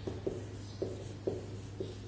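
Marker pen writing on a whiteboard: about five short strokes of the tip against the board as letters are drawn, over a steady low hum.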